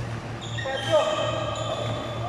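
Sports shoes squeaking on an indoor badminton court floor, with one sharp gliding squeal about a second in, against voices in a reverberant hall.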